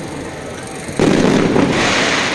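Aerial firework shell bursting with a sudden loud boom about a second in, followed by crackling as its glitter stars fall.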